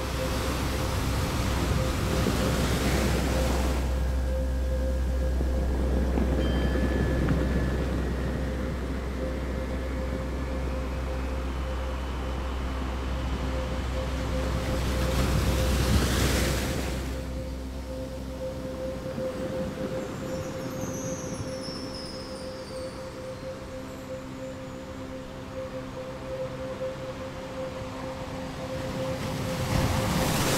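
Ambient meditation backing: a steady held drone tone under the sound of ocean waves, with a wash swelling about two to three seconds in and again at about fifteen seconds. The deep low hum under the drone drops away a little after the middle.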